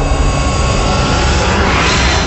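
Cinematic logo-intro sound effect: a loud, dense rumble like a jet passing, with a rising whoosh building near the end.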